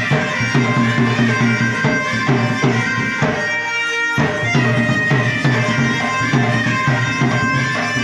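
Danda nacha folk music: a steady drum beat under a reedy wind instrument holding a high melody. The drums break off for under a second midway, then come back in.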